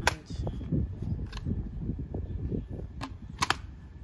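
Sharp clicks and knocks from a spin mop's stainless steel handle and plastic fittings being handled over its plastic bucket: one at the very start, one about a second and a half in, and a quick pair near the end, with low handling noise between them.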